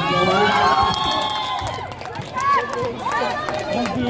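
A volleyball crowd shouting and cheering: many high voices overlap for the first second and a half, then a few scattered shouts follow.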